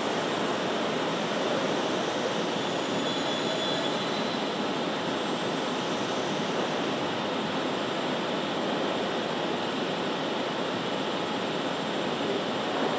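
Steady, even rushing machinery noise of a panel-processing hall, with a faint high whine briefly about three seconds in.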